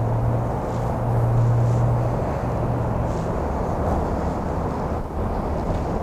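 The 2013 Corvette Grand Sport's LS3 V8, with its Corsa cat-back exhaust, idling steadily, heard from inside the cabin as a low hum and rumble. The hum is strongest for the first three seconds, then eases a little.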